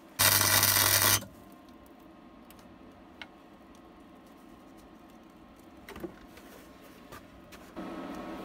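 Gasless flux-core MIG welder striking an arc to put a tack weld in a sheet-metal floor patch: one loud burst of about a second with a steady low hum underneath, cutting off sharply. A few faint clicks of handling follow.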